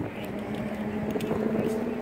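Light rail train approaching, heard as a steady low hum over outdoor background noise.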